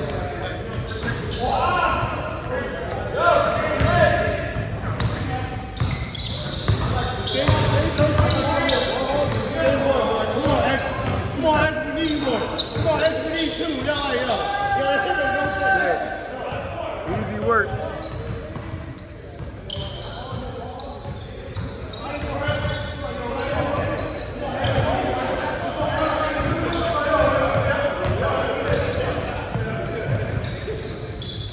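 A basketball bouncing on a hardwood gym floor, mixed with players' voices, all echoing in a large gymnasium.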